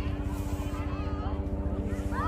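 Distant calls and shouts of players and spectators across a soccer field, over a steady low hum.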